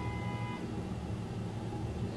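Steady low background rumble, with a faint held tone that fades out about half a second in.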